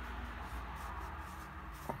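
Wide flat hake brush swept back and forth across wet watercolour paper, a faint soft brushing over a low steady hum.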